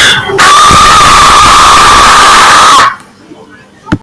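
A very loud, held scream, starting about half a second in and cutting off suddenly about three seconds in. A single click follows near the end.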